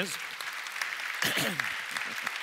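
Audience applauding steadily, with a man's voice and a throat-clear breaking in briefly about a second and a half in.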